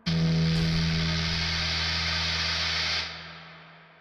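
The closing chord of a rock song with electric guitar, struck once and held loud for about three seconds, then fading away.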